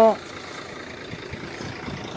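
Steady background rumble of an idling truck engine. A man's voice trails off at the very start.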